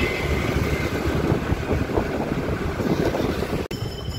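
Wind buffeting the microphone over the running engine and road noise of a motor scooter ridden at about 50 km/h in traffic. The sound drops out for an instant near the end.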